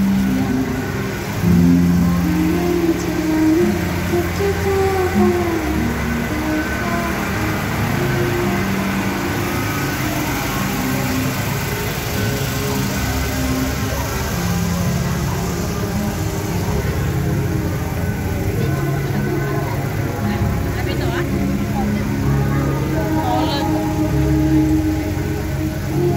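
Street procession sound: music with held, gliding tones playing over loudspeakers, mixed with crowd voices and the running engines of slow-moving float vehicles.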